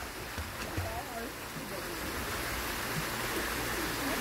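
Pool water splashing and sloshing around a small child swimming, a steady rushing wash of water.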